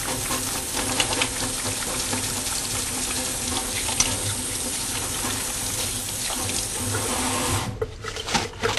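Water running steadily from a sink faucet while hands are washed under it; the flow stops abruptly near the end.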